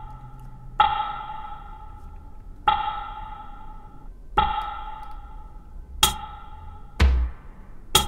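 Pitched percussive sample played three times from an Akai MPC's pads, about two seconds apart, each note ringing out through a spring-reverb tail with its lows cut away. Near the end come a sharp click and a low drum thump with a fading tail.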